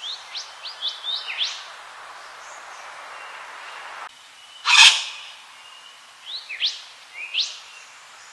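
Wattlebird calling: quick runs of short, sharp notes sweeping upward in pitch near the start and again near the end, with one loud harsh rasp about five seconds in.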